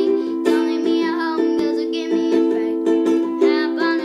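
Ukulele strummed in a steady rhythm of chords, with a girl's singing voice over it in places.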